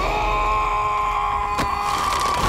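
A man screaming: one long cry held at a steady pitch for about two seconds.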